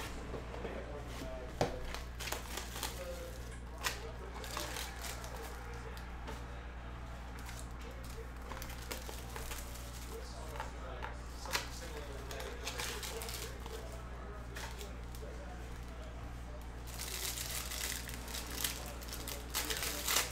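Hands opening a cardboard Panini Absolute basketball card box and handling its packaging and cards: scattered sharp clicks and taps, then a burst of crinkling and tearing of wrapper about three seconds before the end, over a steady low hum.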